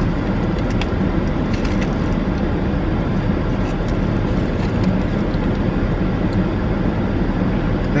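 Steady rush of a car's air-conditioning blower inside the cabin of a parked SUV, with the vehicle's idling engine humming underneath.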